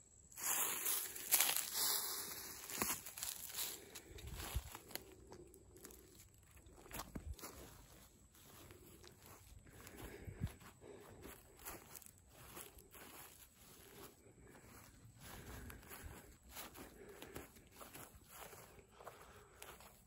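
Footsteps walking over grass and scattered dry leaves: soft, irregular crunching steps, loudest in the first few seconds.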